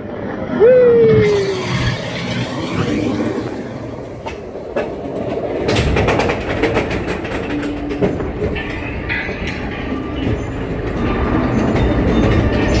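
Seven Dwarfs Mine Train roller coaster train running along its steel track with a steady rumble, a short falling squeal about half a second in. About halfway through it reaches the chain lift hill and starts clacking as it begins to climb.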